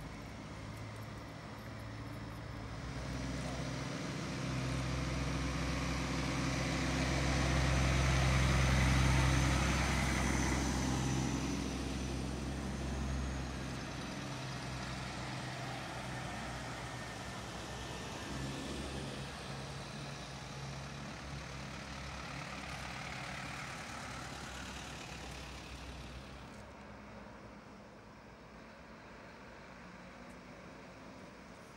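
Diesel engines of heavy articulated lorries moving slowly past one after another. The loudest lorry goes by about a third of the way in, a second, quieter one follows, and the sound fades near the end.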